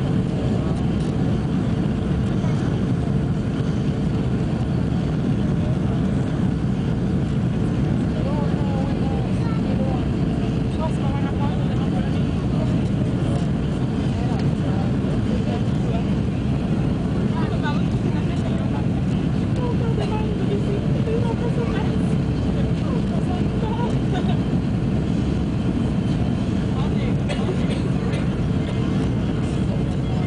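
Steady cabin noise of an Airbus A310-300 on final approach, heard from a window seat over the wing: a dense, even rumble of the jet engines and airflow with a faint steady hum. Faint passenger voices sit underneath.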